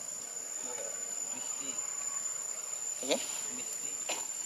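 Insects droning with a single steady high-pitched tone. A voice says "okay?" near the end.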